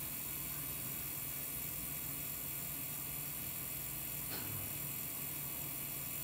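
Electric potter's wheel running steadily: a low, even hum with a faint hiss.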